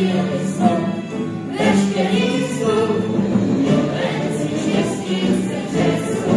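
Many voices singing together in chorus over instrumental music: a stage musical's ensemble number.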